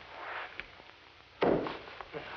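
A single sudden thump about a second and a half in, against faint hiss from an old soundtrack.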